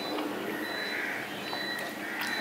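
A man chewing soft ripe papaya with his mouth closed: wet, swelling and fading mouth sounds with a few small clicks, over a faint steady high tone.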